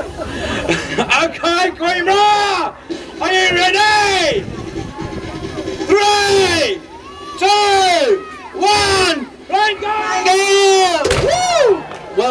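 A high, loud voice repeatedly shouting long wordless calls that each rise and fall in pitch, over crowd noise.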